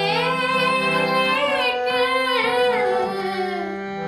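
A woman singing a long, ornamented phrase in Raag Aiman (Yaman), her voice gliding and bending in pitch over steady held accompanying notes.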